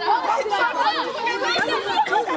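A group of children and young people talking and calling out at once: many overlapping, high-pitched voices in steady chatter.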